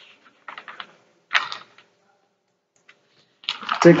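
A few light clicks about half a second in, then a brief scratchy noise just after a second. A man's voice starts near the end.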